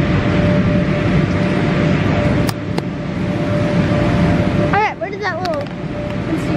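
Steady drone of the electric air blowers that keep the inflatable bounce houses up, with a faint constant hum running through it. There are two sharp clicks a few seconds in, and a child's high, rising-and-falling call near the end.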